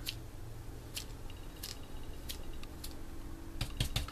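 Paintbrush bristles being flicked with a fingertip to splatter paint, each flick a sharp tick: about once every half-second to second, then three quick ones close together near the end.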